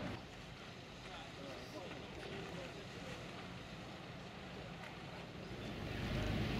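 Paddle steamer Kingswear Castle heard faintly across the water as she moves off from the pontoon, a low, even wash of machinery and water.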